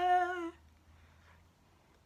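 A woman singing unaccompanied, holding the last note of a line with a slight downward step in pitch; the note ends about half a second in.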